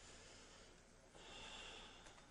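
A man breathing faintly through his nose over quiet room tone, with a soft hiss of breath in the second second.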